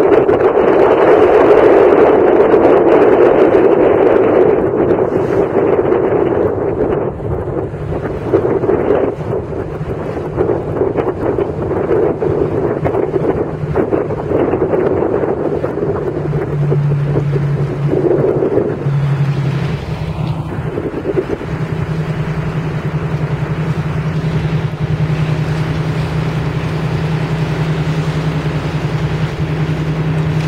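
Wind rushing on the microphone, loudest in the first several seconds, over a boat's engine running on open water. About halfway through, the engine's steady low hum becomes clear and holds.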